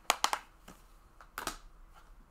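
Sharp plastic clicks from handling a clear Blu-ray case: a quick cluster of clicks at the start and another short cluster about a second and a half in.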